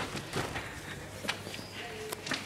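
Footsteps and a few scattered knocks as people pass through a pushed-open wooden door into an entry hall.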